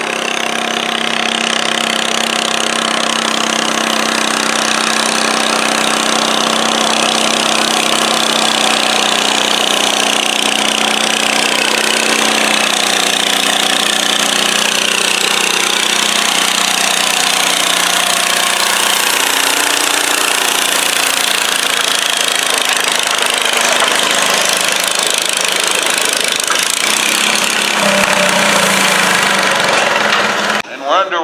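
Small International Harvester garden tractor engine running hard under load as it drags a weight sled in a stock-class tractor pull. The engine note stays loud and steady, wavering slightly in pitch.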